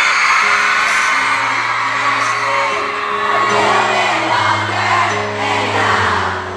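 Live pop ballad: a male voice singing over piano and band, with held bass notes, recorded from within the audience, with fans whooping over the music.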